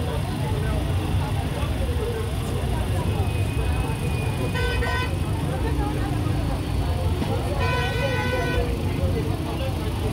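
Crowd chatter from many voices over a steady rumble of road traffic, with a vehicle horn honking twice: a short toot about halfway through and a longer blast of nearly a second a few seconds later.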